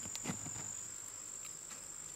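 Crickets chirring in one continuous, steady high-pitched trill, with a few faint soft sounds near the start.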